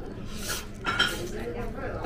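Chopsticks clinking against a ceramic plate: two sharp, ringing clinks about half a second apart near the middle, the second the louder, over background voices.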